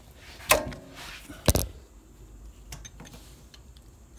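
Open-end wrench knocking against the fill plug and metal housing of a hydrostatic transmission as the plug is loosened: a sharp knock about half a second in, a louder one about a second and a half in, then a few faint ticks.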